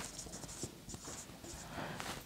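Marker pen writing on a whiteboard: a series of faint short strokes of the tip across the board.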